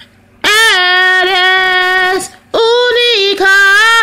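A woman singing solo and unaccompanied, holding two long sustained notes with a short breath between them.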